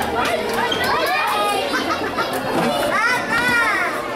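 Background chatter of shoppers in a busy shop, with high-pitched voices rising and falling in pitch, clearest about three seconds in.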